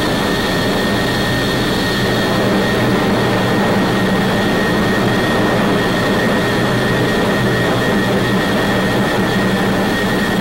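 Jet aircraft noise in high-speed flight past the critical Mach number, the point where the aircraft begins to buffet. It is steady and rushing, with a constant high whine over a low hum.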